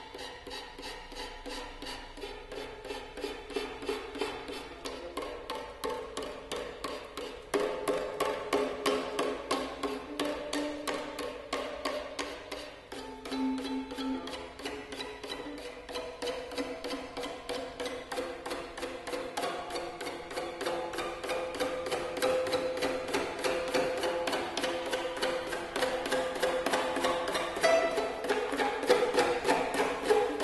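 Amplified violin strings struck in a rapid, even pulse with a rolled paper tube instead of a bow, giving a dry, percussive stream of pitched notes. It grows steadily louder, with a sudden step up in level about seven seconds in.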